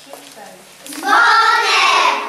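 A child's voice: one long, drawn-out phrase starting about a second in.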